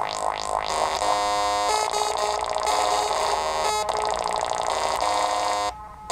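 littleBits Synth Kit modular synthesizer played from its keyboard module: buzzy electronic notes that change pitch every second or so, with a few quick rising sweeps in the first second. The sound drops out briefly near the end.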